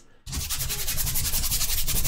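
Paintbrush scrubbing thinned paint onto a canvas in rapid, even back-and-forth strokes, starting about a quarter second in.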